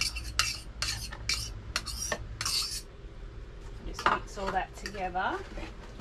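Metal spoon scraping and tapping against a small bowl, knocking chopped onion and green chilli into a glass bowl of marinade. It makes a quick run of clinks and scrapes, about two a second, that stops about three seconds in.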